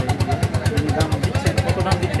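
A nearby engine idling with a steady, rapid chugging of about eight beats a second, under men's voices talking.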